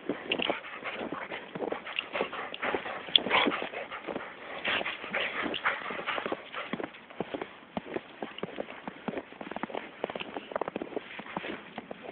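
Footsteps crunching through fresh snow, an irregular run of short crunches.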